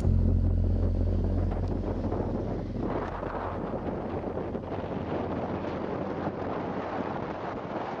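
Onboard sound of a motorcycle riding along: wind rushing over the microphone with engine and road noise. A low steady drone fades away over the first few seconds.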